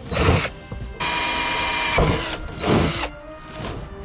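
Cordless drill boring holes in the steel hood sheet metal: a short burst, then a steady run of about two seconds that stops near the end.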